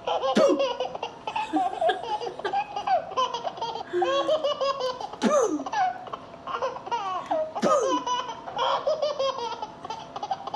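A baby laughing in repeated high-pitched bursts, with a few squeals that slide sharply down in pitch.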